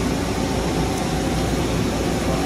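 Steady machine-shop background noise: an even low rumble and hiss with a faint hum, from running machinery and ventilation.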